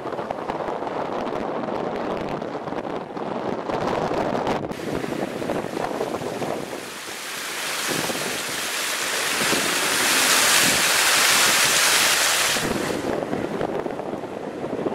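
Muddy floodwater rushing over rocks in a swollen ravine, heard from a moving car with the car's road and wind noise underneath. From about halfway through, the rushing water swells to a loud hiss, then drops away abruptly about a second before the end.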